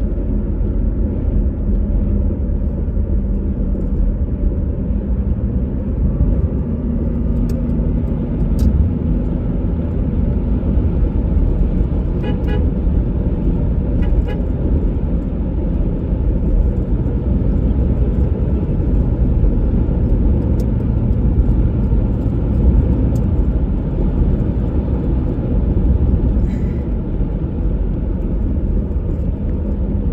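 Steady low engine and road rumble of a car driving along a paved road, heard from inside the cabin.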